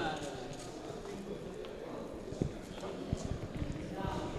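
Indistinct chatter of a small group of men greeting each other, with scattered footsteps and knocks of shoes on a hard floor.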